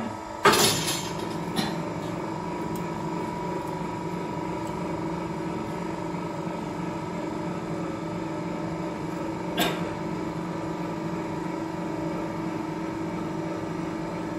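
A stainless steel coil winding machine runs in automatic mode, winding steel rod onto its mandrel with a steady mechanical hum. A loud sharp clank comes about half a second in, and another near the end.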